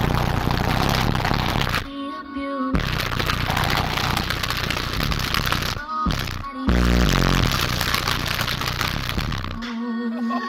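Loud bass-heavy music played through a 5500 W car subwoofer, heard inside the car. The heavy bass drops out briefly twice, about two seconds and six seconds in.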